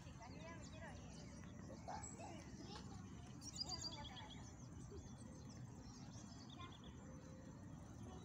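Faint outdoor park ambience: a low steady rumble with faint distant voices, and short high bird chirps, one quick run about three and a half seconds in and another near the end.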